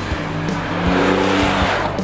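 Triumph Rocket 3 GT's 2.5-litre three-cylinder engine as the motorcycle rushes past, swelling to its loudest about a second in and fading near the end. Background music with a steady beat runs underneath.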